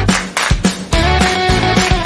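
Background music with a steady beat and held instrumental notes.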